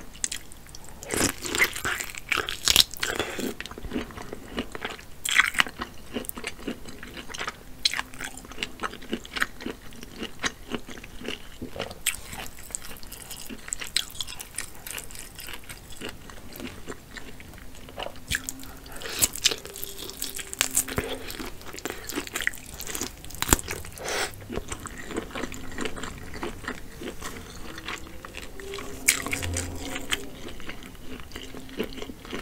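Close-miked chewing and biting of buttery lobster tail meat: irregular wet clicks, smacks and crackles from the mouth, heavier in a few bursts of bites.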